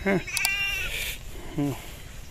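A sheep bleats once, a high-pitched call lasting under a second, near the start. A man says a brief word shortly after.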